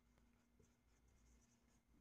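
Near silence: a marker writing faintly on a whiteboard, with a faint steady hum.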